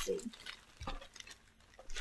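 Faint handling noises: a few soft clicks and rustles as small items from a mail package are picked up and moved about, one about a second in and another near the end.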